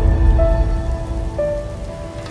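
Logo-reveal intro music: sustained synthesizer tones that step to new notes twice, over a steady hiss and a deep rumbling bass.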